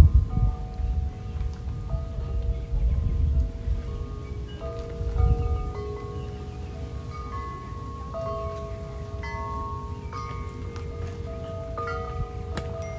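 Wind chimes ringing, with long overlapping tones at several pitches struck at irregular moments. A low rumble sits under them in the first few seconds.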